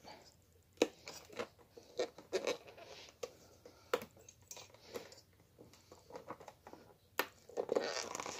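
A drone's retail box handled while picking at its tape seal: irregular crinkles, scratches and light clicks of packaging, the sharpest click about a second in and another near the end.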